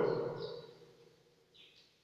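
Chalk writing on a blackboard, giving two short high squeaks, one about half a second in and one near the end, as the tail of a man's spoken word dies away.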